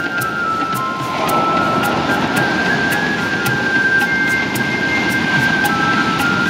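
Ocean surf washing steadily onto a beach, swelling as a wave breaks about a second in, under soft new age music of long held notes.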